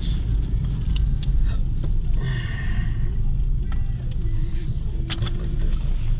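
Steady low engine and road rumble heard from inside the cabin of a moving car. A short higher-pitched sound comes about two seconds in, and a sharp click comes about five seconds in.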